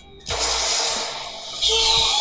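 Audio of the animated episode playing: a sudden loud rushing noise about a third of a second in that fades away, then music with held tones coming in near the end.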